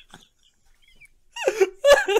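A quiet pause, then about a second and a half in a man laughs out loud twice in quick succession.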